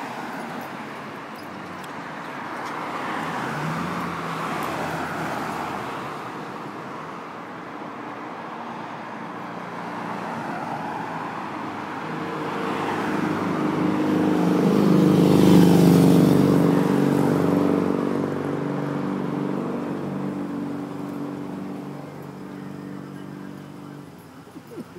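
Road traffic, with cars passing one after another. The loudest vehicle passes about two-thirds of the way through, its engine note swelling and then fading away.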